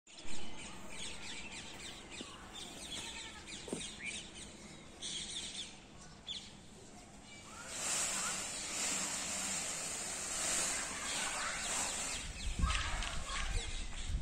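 Small birds chirping in short, scattered high calls, over a steady outdoor hiss that grows louder about halfway through, with a brief thump at the very start.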